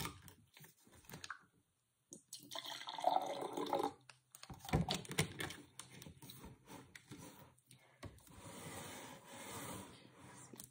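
Juice poured from a plastic jug into a glass, with clicks from the screw cap being handled. There is a sharp knock about five seconds in, as of the jug or glass set down on the table.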